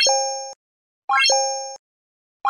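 Like-and-subscribe end-screen sound effects: twice, a fast upward run of electronic notes ending in a bright chime that fades over about half a second. The second comes about a second in.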